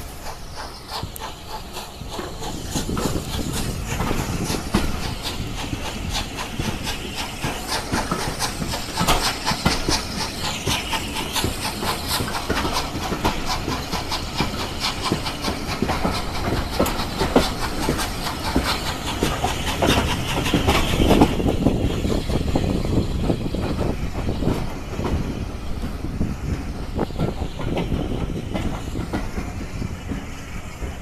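A train running along the track, its wheels clicking steadily over the rails with rushing air noise, heard from the carriage window. The high rushing eases a little about twenty seconds in.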